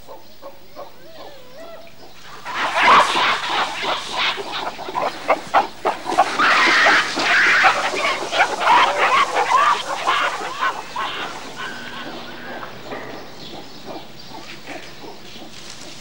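Gorillas calling: faint wavering calls at first, then a loud, dense run of rapid cries starting a couple of seconds in and dying away after about ten seconds.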